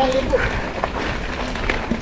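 Mountain bike on a dirt trail: steady tyre and trail noise with scattered short clicks and rattles. A drawn-out spoken word ends in the first moment.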